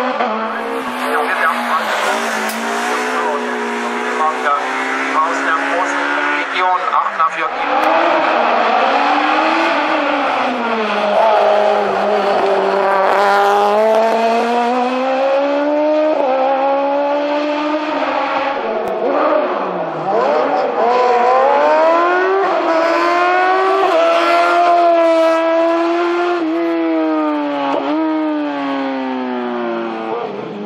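Hillclimb race car engines revving hard one after another, climbing in pitch through the gears and dropping back at each shift and lift.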